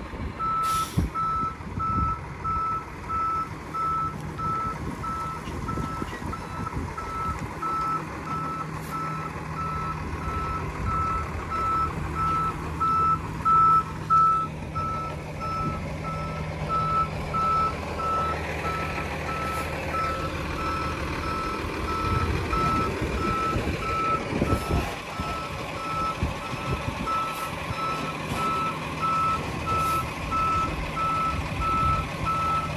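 Tractor-trailer backup alarm beeping at a steady, regular pace on one pitch as the rig reverses, over the low running of the truck's engine.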